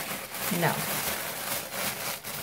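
Light, irregular rustling and crinkling of plastic wrapping as makeup brushes are handled and unwrapped.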